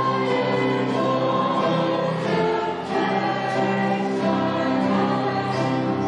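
Congregation singing a hymn in slow, held notes with instrumental accompaniment.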